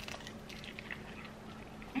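Faint chewing of crispy baklava, filo pastry with nuts, heard as a few soft, scattered crackles.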